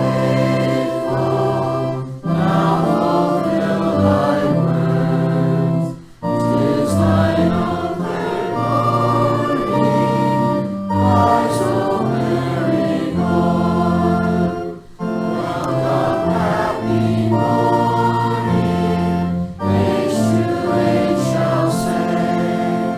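Congregation singing a hymn with sustained organ accompaniment. The music moves in phrases with brief breaks between them, about every four to five seconds.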